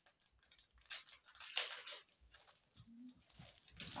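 Small plastic product packaging being handled and opened by hand: a few short bursts of crinkling and tearing, the loudest about a second and a half in.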